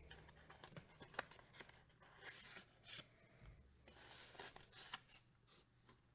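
Faint rustling and sliding of a paper trading-card pack being opened and a card in a plastic top-loader being drawn out of it, with a few light clicks.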